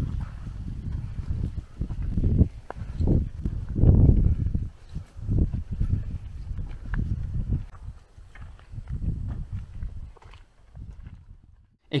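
Footsteps on a dry dirt track, uneven thuds over a low rumble of handling and wind noise on a handheld camera's microphone, fading out near the end.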